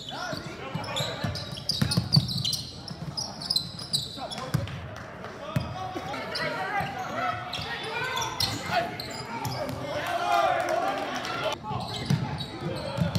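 A basketball bouncing on a hardwood gym floor during play, a series of sharp thuds, with players' and spectators' voices echoing in the gym.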